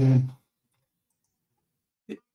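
A man's drawn-out 'uh' hesitation, held at a steady pitch and ending about half a second in, followed by near silence with a few faint clicks.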